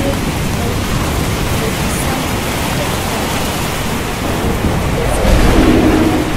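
Thunderstorm: steady heavy rain, with a low rumble of thunder swelling near the end.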